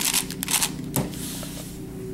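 Plastic Shengshou 6x6 puzzle cube being handled, with a few sharp clicks in the first second, then a soft brushing sound as it is set down on a cloth mat.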